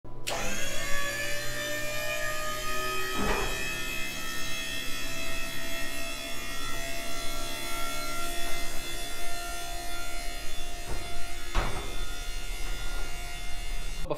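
Home-built hydraulic scissor lift running as its platform rises, giving a steady mechanical hum of many tones. Two sharp knocks come about 3 seconds in and about 11.5 seconds in.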